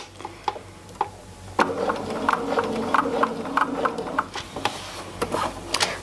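Bernina sewing machine stitching slowly: after a few faint clicks, the motor starts about a second and a half in and runs with a steady hum and a tick at each stitch, about three a second, stopping just before the end.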